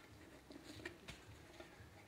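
Near silence: room tone with a few faint ticks and rustles from gloved hands handling the lower control arms on the floor.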